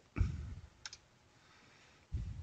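Computer keyboard clicks: a short dull knock just after the start, then one sharp click just under a second in, as a key press runs a command in a terminal.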